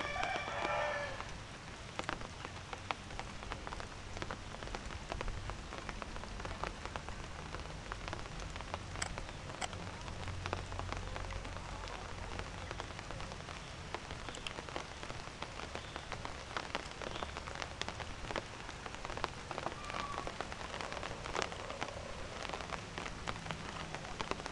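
Rain falling steadily, a constant hiss scattered with the irregular ticks of individual drops.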